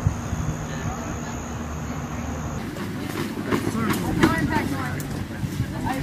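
A low steady rumble with a thin high whine above it, cut off abruptly about two and a half seconds in. Then voices talk at a distance outdoors, with a few knocks and clatters among them.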